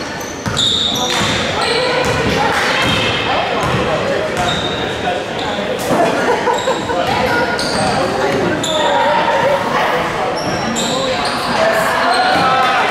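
Basketball being dribbled on a hardwood gym floor, with repeated bounces, short high squeaks of sneakers on the court, and indistinct shouts and chatter from players and spectators echoing in the gym.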